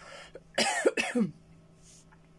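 A woman coughs twice, clearing her throat, about half a second in, after a short breath. The cough comes from a sore, swollen throat that she puts down to inflamed lymph nodes.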